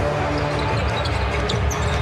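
Basketball arena game sound: a crowd haze with a few steady held notes of music over it, and a basketball being dribbled on the hardwood court.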